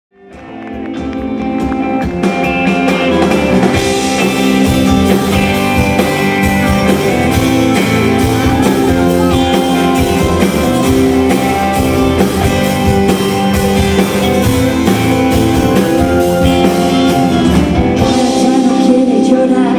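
Live band playing a song's instrumental intro on guitars and drum kit, with a steady beat. It fades in from silence over the first two seconds.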